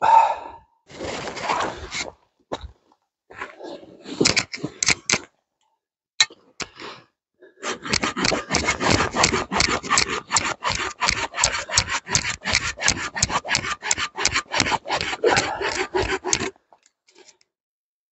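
Silky Big Boy folding pull saw with medium teeth cutting through a log in quick, even strokes, about four to five a second, for some nine seconds from about eight seconds in. Before that come two shorter bursts of scraping as the cut is started.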